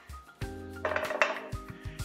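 A few light knocks and clinks of a nonstick frying pan being handled on a portable gas stove's grate, under background music holding a steady chord.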